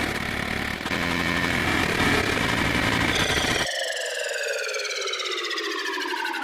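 Electronic sci-fi sound effects: harsh crackling static of a breaking-up transmission, then a little over halfway through the static cuts off and a pitched tone with many overtones sweeps steadily downward.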